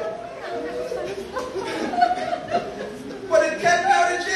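Speech only: a man talking through a microphone and speaker system in a hall.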